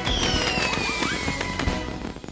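Cartoon celebration sound effect: a pop as a robot bursts open into confetti, then a whistle falling in pitch and a run of firework-like crackling pops, over background music.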